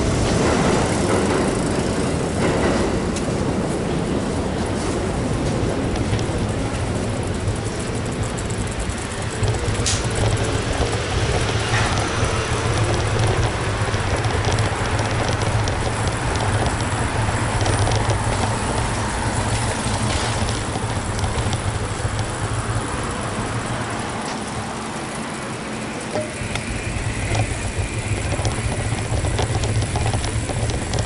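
Steady outdoor street noise from road traffic running alongside a pedestrian walkway, with a continuous low rumble and scattered small clicks and knocks.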